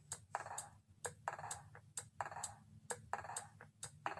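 Faint footsteps on a hard store floor, a short click and scuff about twice a second as she walks, over a steady low hum.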